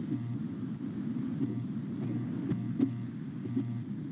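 Steady low rumble of background noise on an open video-call microphone, with a few faint clicks.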